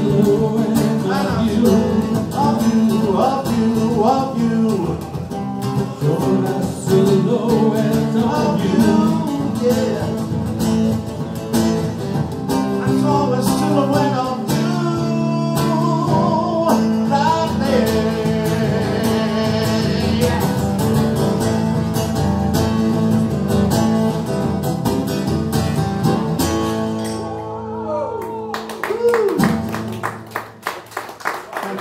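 Live electric guitar and a man singing, played loud in a small room. The song ends a couple of seconds before the end, and clapping starts.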